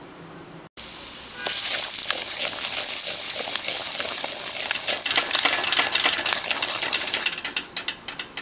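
Curry powder and masala spices frying in hot vegetable oil in a metal pan, sizzling loudly from about a second and a half in while a metal spoon stirs and clicks against the pan. The sizzle eases near the end.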